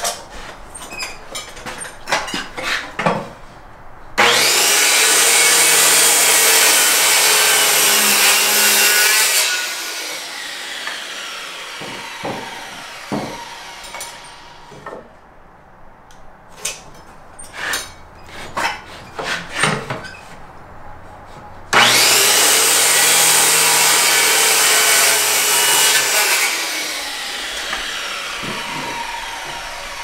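Circular saw cutting through a wooden leg post twice, each cut running about five seconds before the motor winds down over a few seconds. Between the cuts come light knocks and scrapes of a speed square and pencil marking the wood.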